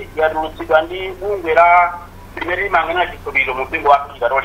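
Speech: a person talking on without pause, the voice thin and narrow, like sound over a phone line or radio.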